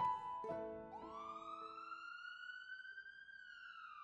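Soft piano-like music notes, then about a second in a single siren-like wail: one tone that rises quickly, holds while creeping higher, and falls slowly near the end.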